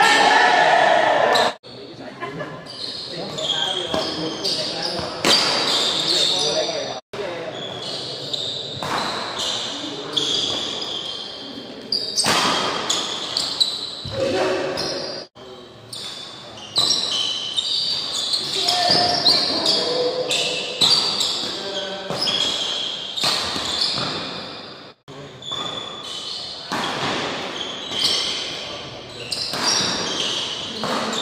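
Badminton rally: rackets striking the shuttlecock in a string of sharp hits, with high-pitched shoe squeaks on the court floor and players' voices, echoing in a large hall.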